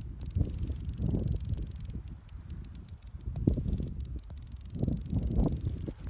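Irregular gusting rumble of wind buffeting a phone's microphone, mixed with rubbing and handling noise as the phone is moved about.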